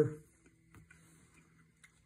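Near silence: room tone with a faint steady hum and a couple of faint ticks, about a second in and near the end.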